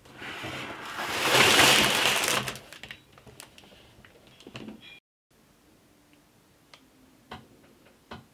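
A LEGO set's cardboard box being opened and its bagged bricks handled: a loud rustling scrape for the first two and a half seconds, then a few light clicks and crinkles of the plastic parts bags, fainter in the second half.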